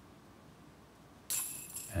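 A disc golf putt striking the metal chains of the basket about a second in: a sudden jingle of chains that rings briefly and fades as the putt drops in for par.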